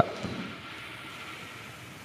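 A steady low hiss of background noise in the pause between speakers, slowly fading.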